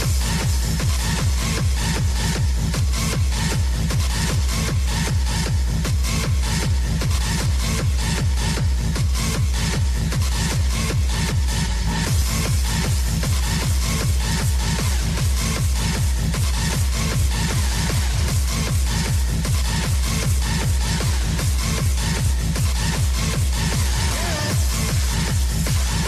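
Hardstyle DJ set: electronic dance music driven by a steady, fast kick drum on every beat.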